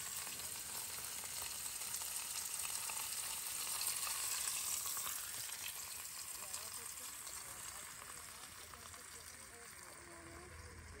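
Burgers frying, a faint steady sizzle that fades away over the last few seconds.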